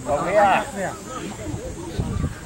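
A person shouting once, loudly, about half a second in, then fainter voices, over a steady hiss.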